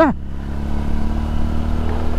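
Motorcycle engine running steadily at cruising speed, a low even drone, under a continuous rush of wind and road noise heard from the rider's seat.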